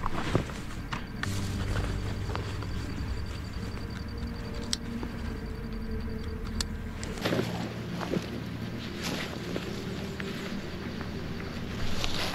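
Handling a backpack on the ground in dry grass and brush: rustling and rummaging noises, with a couple of sharp clicks in the middle, over a steady low hum.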